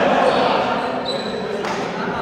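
Volleyball play echoing in a sports hall: voices of players and spectators, with a sharp volleyball impact about one and a half seconds in.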